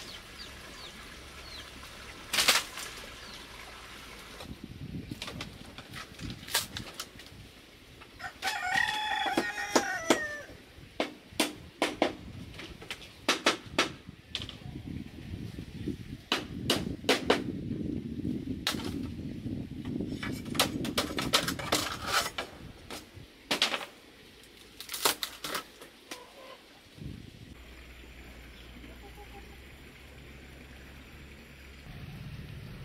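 Bamboo floor slats knocking and clattering in irregular strikes as they are pried up and handled, with a rooster crowing once, for about two seconds, roughly a third of the way in.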